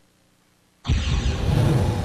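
A brief gap of near silence, then a sudden loud rush of noise with a deep rumble underneath, a sound effect opening a TV promo.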